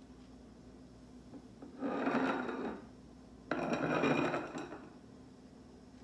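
Two rubbing, scraping sounds, each about a second long, as glass-ornament topiaries are handled and shifted on the countertop; the second starts abruptly and is a little louder.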